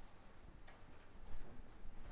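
Quiet hall room noise with a few faint footsteps, about one every half second or so, as a man walks across a carpeted floor.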